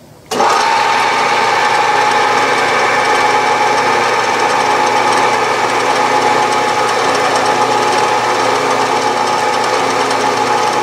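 A milling machine spindle switches on a moment in and runs steadily with a constant whine while a small center drill cuts a starting hole in a 3/16-inch brass rod.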